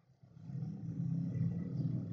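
A low, rough, steady hum starting about a third of a second in, with little high-pitched content.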